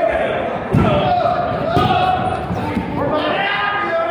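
Three heavy thuds on a wrestling ring's canvas, about a second apart, over voices shouting in a large hall.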